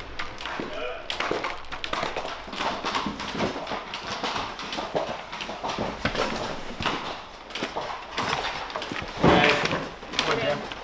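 Irregular knocks, taps and clatter from people handling gear on a concrete warehouse floor, with voices. A loud burst of voice comes about nine seconds in.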